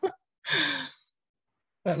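A person sighing: a single breathy exhalation of about half a second with a falling voiced tone.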